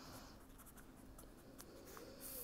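Faint scratching of a felt-tip marker pen writing letters on a paper sheet.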